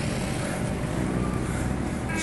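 Steady outdoor rumble and hiss with no distinct events.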